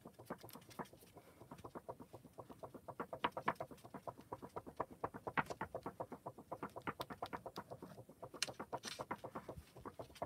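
Rapid, light tapping at several taps a second, uneven in strength. It starts about a second in and stops just before the end.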